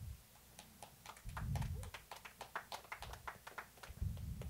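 Faint, quick clicking of laptop keys, several clicks a second, with low muffled bumps underneath.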